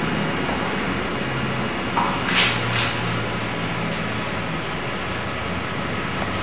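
Steady background hum and hiss of the room, with a low drone underneath and a couple of faint brief sounds about two to three seconds in.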